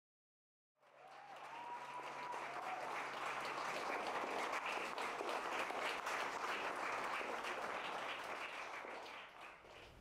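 Audience applauding. The clapping starts about a second in, holds steady and fades away near the end.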